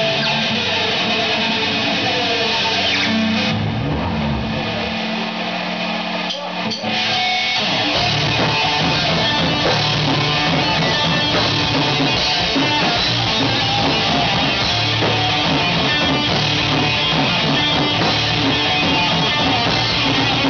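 Live hard rock band playing an instrumental passage on distorted electric guitars, bass and drums. The sound thins out with a falling glide between about four and seven seconds in, then the full band comes back in.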